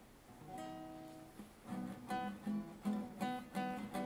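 Nylon-string classical guitar strummed as a song's intro: a chord rings for about a second, then from about the middle a steady run of strums begins, roughly three a second.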